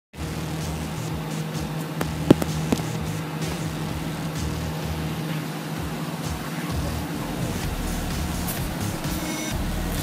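A steady low hum over outdoor background noise, with two sharp clicks a little over two seconds in.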